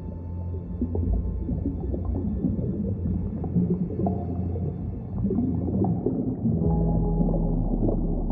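Ambient background music of long held low tones over a deep drone, shifting to a new chord about seven seconds in.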